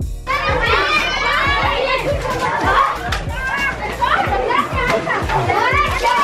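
A crowd of young children shouting and squealing excitedly all at once, over background music with a steady beat.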